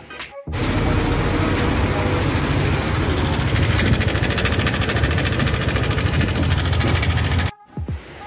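Yamaha Aerox scooter's single-cylinder engine running with a loud, rapid mechanical clatter that sounds like a helicopter. The noise comes from a crushed camshaft found when the engine was torn down. It starts about half a second in and cuts off shortly before the end.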